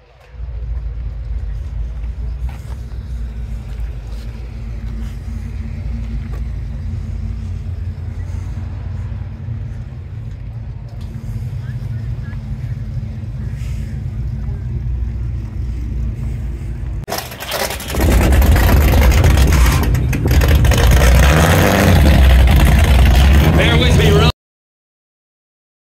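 Mopar big-block V8 idling steadily with a low, even rumble. About three-quarters of the way through, a much louder, rougher engine-and-exhaust sound suddenly takes over and continues to the end.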